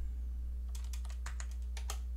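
Computer keyboard keys being typed, a quick run of sharp clicks in the second half, over a low steady hum.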